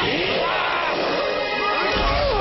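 Several gruff cartoon monster voices crying out together with pitch sliding up and down, over dramatic background music.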